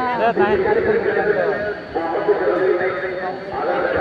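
Men's voices talking and calling out at a village football match, spectators and commentary. About halfway through there is a steady held tone lasting a second or so.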